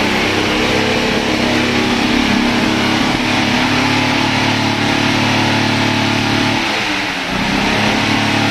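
Mercedes-Benz W115 230.6's straight-six engine revved through its twin-tip exhaust, held steady at raised rpm. Near the end it drops back briefly, then revs up again and holds.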